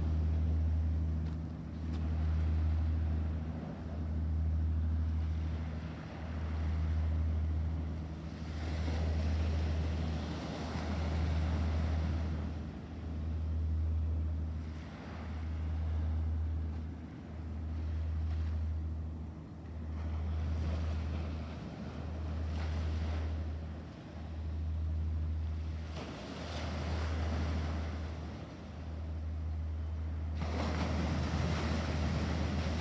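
Ocean surf washing on the rocks and beach, with wind on the microphone. Under it a low hum swells and dips very regularly, about once every two seconds.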